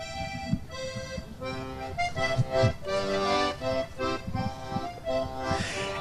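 Basque diatonic button accordion (trikitixa) playing a tune, a run of clear notes that change several times a second.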